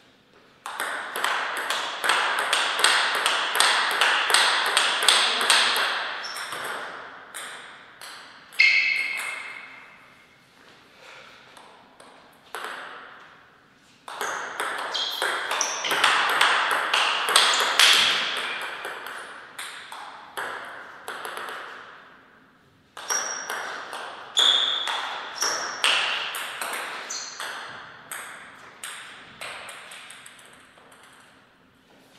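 Table tennis ball clicking off bats and table in three quick rallies of several seconds each, with pauses between them and a few loose bounces.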